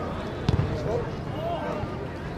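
A football is kicked once, a single sharp thump about half a second in, heard over the chatter of spectators' voices.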